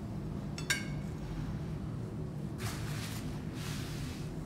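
A single sharp, ringing clink of a kitchen knife against a ceramic plate, then a brief softer scrape as plates are moved on a steel counter, over a steady low hum.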